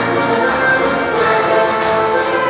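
Yamaha PSR-S770 arranger keyboard playing an instrumental passage of a gospel worship chorus, with sustained chords held over steady accompaniment.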